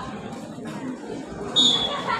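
A short, sharp referee's whistle blast about one and a half seconds in, over the background chatter of spectators.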